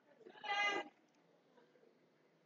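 A single short pitched cry, about half a second long, a little way in.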